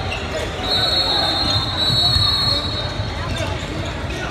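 Indoor basketball gym during a game: a ball bouncing on the hardwood floor in a large echoing hall. A high, steady whistle-like tone sounds from about a second in for roughly two seconds.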